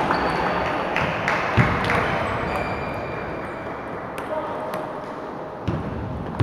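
Table tennis balls clicking on tables and bats, irregular scattered hits over a murmur of voices in a large hall.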